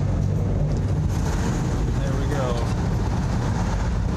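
Steady low rumble of tyres and engine inside a moving vehicle's cab as it drives across a bridge deck, with a brief voice about two and a half seconds in.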